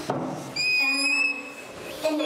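Whiteboard marker squeaking as it is drawn across the board: one high, steady squeal starting about half a second in and lasting about a second and a half.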